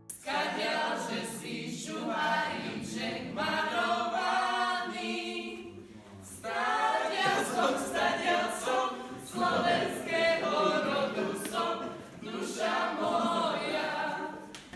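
A group of voices singing together a cappella, with no instruments, in phrases of two to four seconds separated by short breaths.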